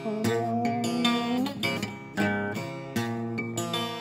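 Acoustic guitar played solo between sung lines: several chords strummed and left to ring.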